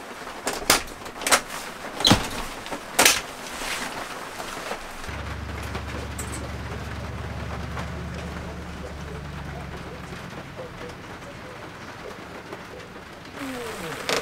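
Steady rain with a few sharp clicks and knocks in the first three seconds, then a vehicle's low engine hum from about five to ten seconds in.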